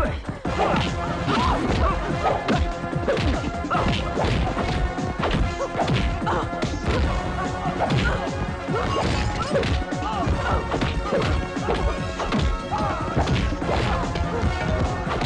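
Film fight sound effects: a rapid run of punches, blows and crashes, one after another throughout, over loud background action music.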